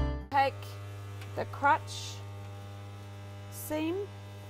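Guitar music cuts off right at the start, leaving a steady low electrical mains hum.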